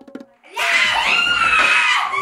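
A girl's excited high-pitched scream, starting about half a second in and held, with the pitch falling slightly.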